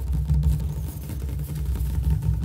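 Rapid fingertip tapping on a hard countertop, close-miked, heard mostly as a dense, continuous low thudding with little high-end click.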